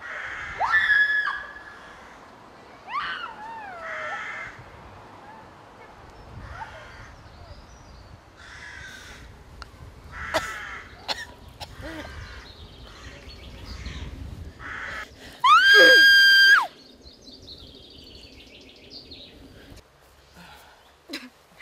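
A woman screaming and crying out repeatedly, in short harsh cries and gliding wails. About three-quarters of the way through comes one long, high, held scream, the loudest sound.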